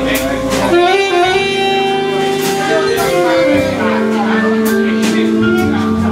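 Live jazz quartet: saxophone playing a melody of long held notes over vibraphone, double bass and drums, with cymbal strikes keeping time.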